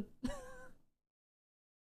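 A woman's short high-pitched vocal sound, under a second long, then dead silence.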